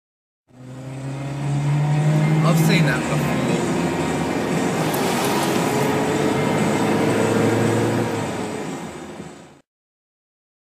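A car engine running over road noise, its note rising slowly as the car accelerates. There is a brief wavering high sound about two and a half seconds in.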